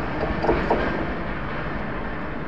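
Rumble of a passenger train's wheels on the rails as its last coaches roll away, easing slowly, with two clacks over rail joints about half a second in.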